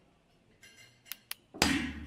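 Two quick, light taps on a brick wall, a tap-tap signal passing between the diner and something hidden behind the bricks. A louder, half-second rush of noise follows near the end.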